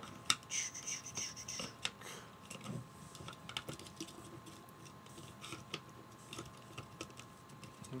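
Small plastic clicks and taps, scattered and irregular, from an action figure's joints and parts being handled as it is posed and fitted onto a toy motorcycle.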